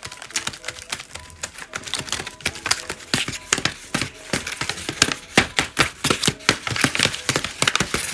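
Folded-paper dragon puppet tapping for ASMR: a fast, irregular run of crisp paper taps and clicks with some crinkling, denser and louder from about three seconds in.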